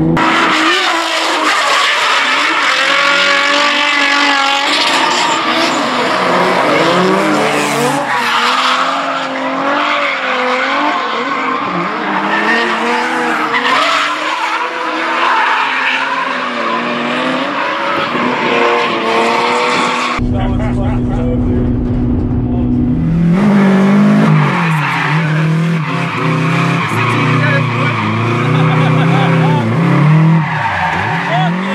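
Drift cars' engines revving and tyres squealing as they slide sideways. The sound changes abruptly about twenty seconds in to a lower engine note that rises and falls with the throttle.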